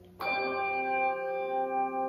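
A bell struck once, a fraction of a second in, its clear tone ringing on and slowly fading. It is tolled in the pause after each name of the dead is read out.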